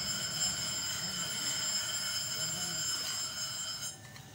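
A high-voltage boost module (a 4 V to "400 kV" step-up coil) running on a lithium cell, giving a steady high-pitched whine of several tones from its oscillator and transformer. It cuts off just before the end.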